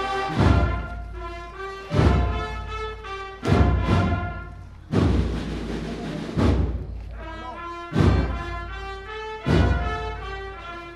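A Spanish Holy Week processional band (agrupación musical) of brass and drums playing a slow march, with a heavy bass-drum beat about every second and a half under a sustained brass melody.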